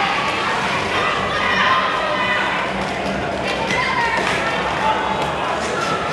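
Hubbub of many voices echoing through a large hall, over the continuous rumble of roller skate wheels on the concrete floor and the odd thud of skaters colliding.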